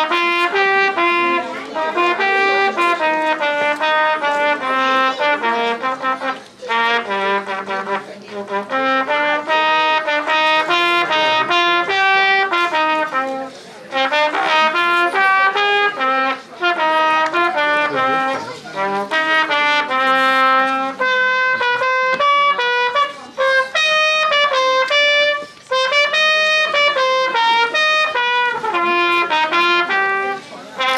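A solo trumpet plays a festive fanfare melody: a single line of clear, separate notes, phrased with short breaks for breath.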